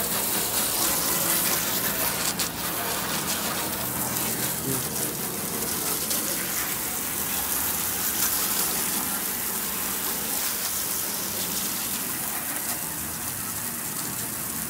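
A jet of water from a hose spraying steadily onto a soapy pickup truck bed, splashing off the ribbed metal floor.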